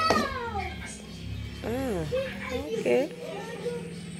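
A high-pitched voice gives short wordless calls: a falling one at the start, then two brief calls that rise and fall about two and three seconds in.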